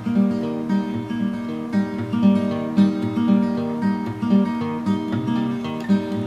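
Acoustic guitar played solo without singing, a steady picked rhythm with bass notes falling regularly on the beat.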